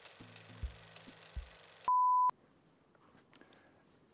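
A single steady electronic beep, one pure tone just under half a second long, about halfway through and the loudest thing here. Before it only a faint hiss with a few soft low thumps; after it near silence.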